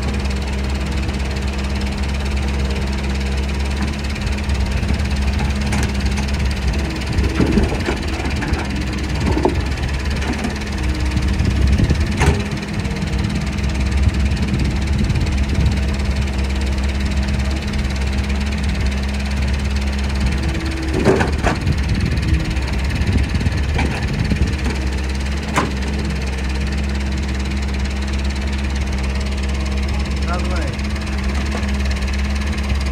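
Doosan excavator's diesel engine running steadily, working harder in two stretches, from about four to sixteen seconds in and again around twenty-one to twenty-five seconds, with a few sharp knocks.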